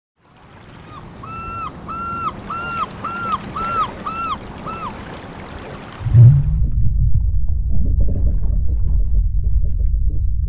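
Intro sound effects. A soft, wave-like wash carries a run of about eight short, arched calls, about two a second. About six seconds in, a sudden deep boom gives way to a loud, low rumbling drone with faint pulses in it.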